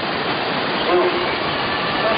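Steady rushing roar of whitewater rapids, with a brief voice heard faintly about a second in.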